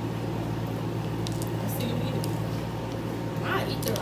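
A steady low hum with a few faint small clicks over it, and a voice starting to speak near the end.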